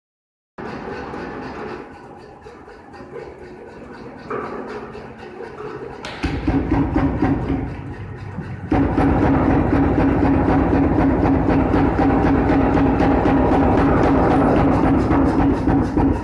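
A pneumatic power hammer rapidly pounding bamboo strips flat to crush them into fibre, with quick, even blows over the hum of its running machinery. It starts softly, gets louder about six seconds in, and reaches full force at about nine seconds.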